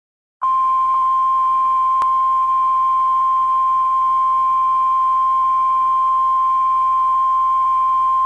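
Television line-up test tone of the kind played with colour bars: one steady, unwavering beep that starts abruptly about half a second in and holds at a constant level.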